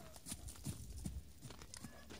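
Horse trotting on snow-dusted frozen ground: a run of irregular hoof thuds.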